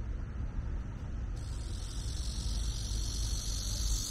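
Outdoor ambience: a steady low rumble, joined about a second and a half in by the high, continuous chirring of insects.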